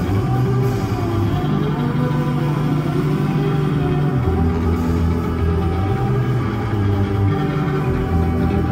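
Live band playing a slow, droning piece, with a strummed acoustic guitar over sustained low notes that shift every few seconds.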